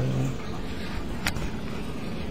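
A man's sung final note is held and ends shortly after the start. A steady hiss follows, with two brief clicks about a second apart.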